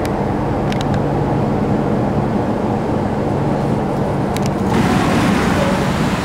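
Steady rumbling ambient noise with a low hum. About three-quarters of the way in the sound shifts and grows a little louder as a steel roller coaster train runs along its track close by.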